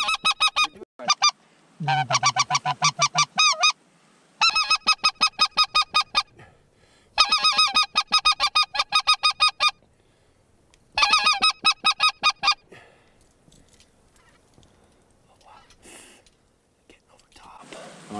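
Geese calling in five runs of rapid, high honks repeated about eight times a second, each run one to two and a half seconds long, with only faint scattered calls in the last few seconds.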